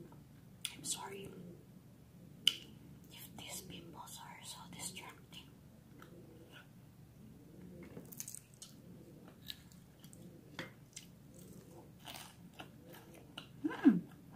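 Close-up chewing of a crunchy fried chicken samosa: crisp, crackling bites of the pastry mixed with wet mouth sounds. Just before the end comes a short, loud voiced hum.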